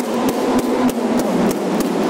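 Sharp knocks in an even rhythm of about three a second, over the steady hum of a busy hall.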